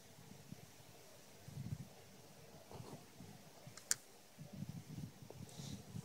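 Faint clicks and rustles of a small metal socket being handled and tried against a grille bolt, with one sharp click a little under four seconds in.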